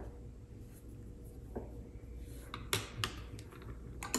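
Faint scratch of a small paintbrush stroking across paper, over a low steady room hum. A few light clicks come near the end of the third second.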